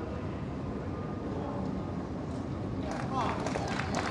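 Tennis stadium crowd murmuring and chattering while waiting on a line-call review. About three seconds in it swells into a rising collective reaction of voices with a few claps as the result comes up.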